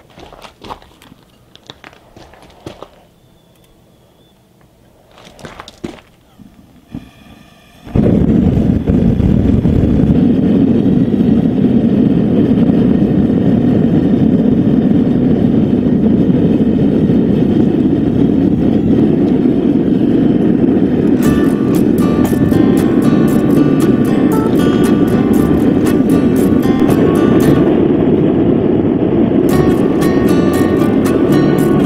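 Faint clicks and rustling, then about eight seconds in a Devil Forge gas forge's burner lights and runs with a loud, steady roar. Background music with a regular beat comes in over the roar about two-thirds of the way through.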